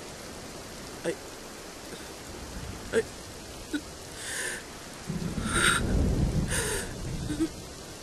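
Steady rain ambience, with a low rumble of thunder that swells from about five seconds in and fades near the end. A few short breathy sounds from a voice come over it.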